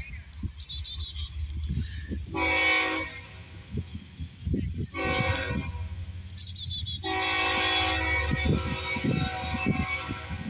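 Approaching CSX freight locomotive's air horn sounding for a grade crossing: a short blast about two and a half seconds in, another about five seconds in, then a long blast from about seven seconds in that is still going at the end.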